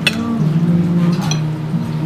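Cutlery clinking and scraping on ceramic plates, a few light clicks, as food is served onto plates, over steady background music.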